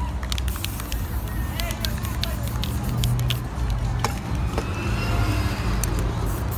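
Steady low outdoor rumble of street ambience, with faint voices and music in the background and a few light clicks.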